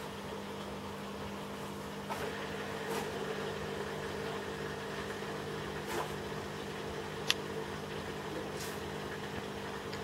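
A steady low electrical or mechanical hum, with a few faint clicks and one sharp tick about seven seconds in.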